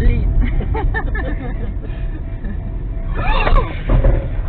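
Inside a moving car: a steady low engine and road rumble under music and voices, with a louder voice rising a little after three seconds in.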